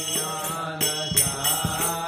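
Devotional mantra chanting to music, with small hand cymbals jingling in repeated strokes.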